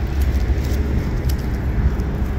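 Steady low outdoor rumble, with faint scratching and ticks of a gloved hand sifting through loose soil and dry leaves.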